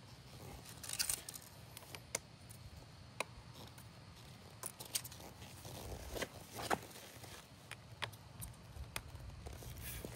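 Plastic drone propellers being handled and fitted by hand onto a DJI Matrice 4T's motors: a scattered series of sharp clicks and scrapes, over a low rumble of wind on the microphone.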